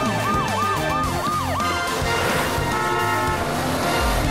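Background music with a cartoon siren sound effect: five quick wails, each sweeping up and falling back, in the first two seconds.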